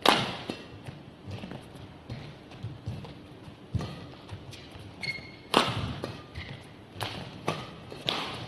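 Badminton rackets striking a shuttlecock back and forth in a rally, a sharp crack every one to two seconds, the loudest right at the start, with lighter thuds in between.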